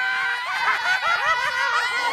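Several voices shouting and squealing excitedly, one of them holding a long high note while the others break in with wavering cries.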